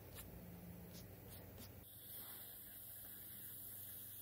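Faint scratching of a stiff-bristled brush sweeping stone chips off a freshly carved stone slab, a few short strokes in the first two seconds, then only a faint hiss.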